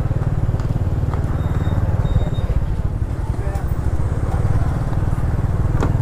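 Motor scooters running through a busy market aisle, a steady low engine rumble throughout, with background voices.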